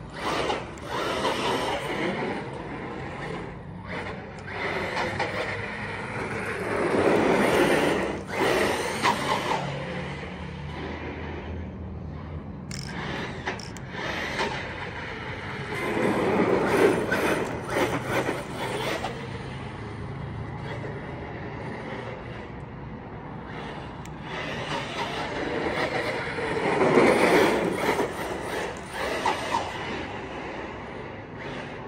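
Team Corally Kagama RC truck's brushless electric motor whining under throttle on a 4S LiPo, with tyre noise on rough asphalt. The sound swells louder three times as the truck passes close, its whine rising and falling in pitch.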